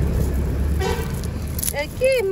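Street traffic: a vehicle engine rumbling, with a short horn toot about a second in.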